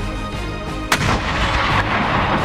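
A mortar firing one round: a single sharp report about a second in, followed by about a second of rumbling echo.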